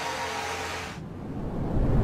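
A hiss of noise that drops away abruptly about a second in, followed by a deep low rumble that swells louder.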